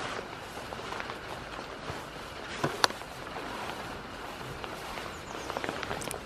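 Steady hiss of light rain, with scattered small knocks and one sharp click a little before the middle.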